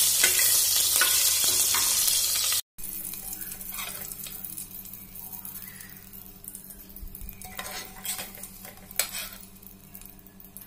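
Soya chunks frying in hot oil in an aluminium pressure cooker, a loud sizzle while a metal spatula stirs them. After a cut about two and a half seconds in, the sizzle is much quieter over a steady low hum, with occasional metal clinks as a slotted ladle lifts the chunks out.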